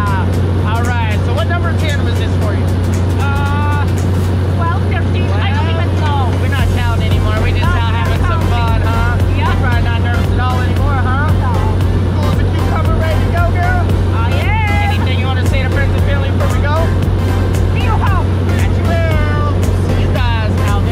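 Steady low drone of a skydiving jump plane's engine heard inside the cabin, with a voice and music over it.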